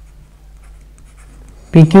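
Faint scratching of a stylus writing strokes on a tablet, then a voice says 'P Q' near the end.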